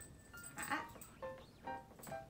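A puppy whining briefly over background music, the loudest moment coming a little after the first half second.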